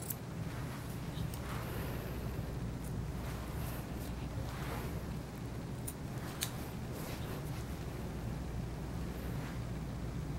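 Grooming shears snipping a Yorkshire Terrier's face hair in scattered single snips, over a steady low hum.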